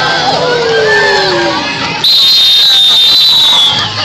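Children and onlookers shouting and cheering over the skate race, then about halfway through a loud, steady, high-pitched whistle blast lasting nearly two seconds that dips in pitch as it stops, with the start of a second short blast near the end.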